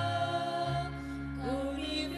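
A slow university anthem: singing over sustained instrumental accompaniment, with long held notes, a low bass note coming in early on, and a note sliding up near the end.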